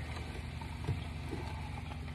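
Steady low mechanical hum, as from a running kitchen appliance, with a faint soft knock about a second in.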